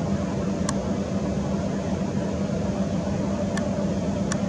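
A steady low mechanical hum with a constant pitch, with a few faint clicks.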